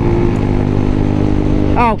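A 2003 Baimo Renegade V125 125cc cruiser motorcycle's engine running at a steady speed under way, with wind noise over the microphone.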